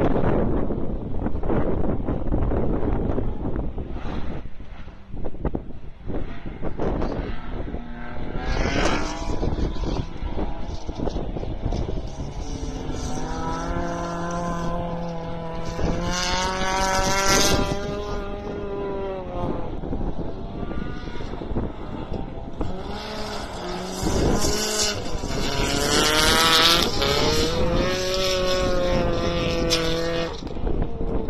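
Race car engines revving hard on a dirt rally sprint track, their pitch climbing and dropping again and again through the gears. The engines are loudest in the middle and again near the end.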